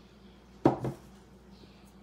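Two sharp knocks about a fifth of a second apart, a little under a second in: kitchenware, such as a glass cup or bowl, knocked or set down on the table.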